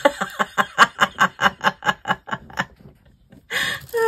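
A woman laughing: a run of quick laugh pulses, about five a second, that fades out after nearly three seconds, followed by a short in-breath near the end.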